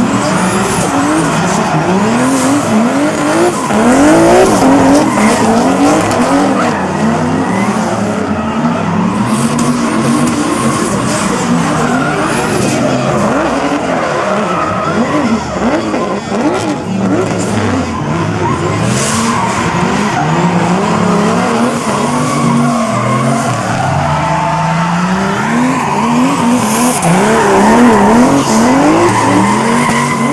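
Two drift cars, a Toyota GT86 and a BMW E46 3 Series, sliding in tandem: their engines rev hard and bounce up and down over and over, over the squeal and hiss of tyres skidding sideways.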